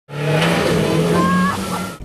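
Off-road 4x4's engine running under load, a steady note that rises slightly in pitch partway through.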